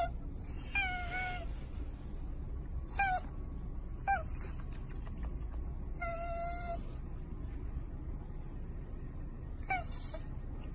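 An otter making squeaky calls, about six of them. Most are short and drop in pitch; two, one near the start and one about six seconds in, are held steady for half a second or more.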